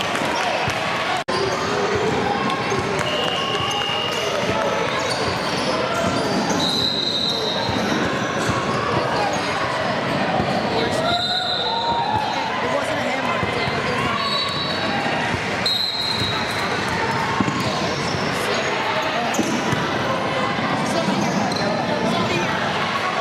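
Echoing sounds of a youth basketball game in a gym: a basketball bouncing on the hardwood court and indistinct shouting and chatter from players and spectators. Several short high squeaks come through at intervals.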